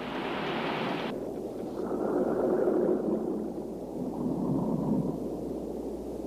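Sea water splashing and churning as a long coring cylinder is dropped into the ocean; about a second in the sound turns abruptly muffled and low, a rushing of water and bubbles as the cylinder sinks.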